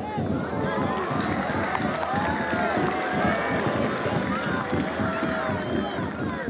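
Stadium crowd at a football match: many voices shouting and calling over one another in a steady din.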